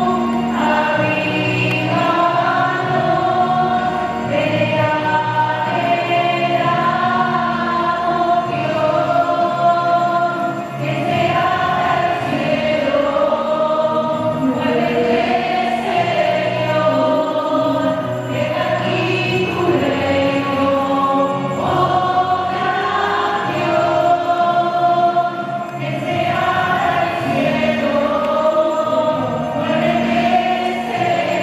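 Sacred choral music: a choir singing a slow piece in long held notes, the pitch moving every second or two.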